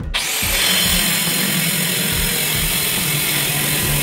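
A power tool, starting suddenly and then running steadily with a dense grinding noise.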